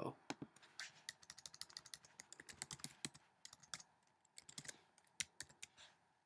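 Typing on a computer keyboard: faint, quick runs of keystrokes, with a shorter run near the end.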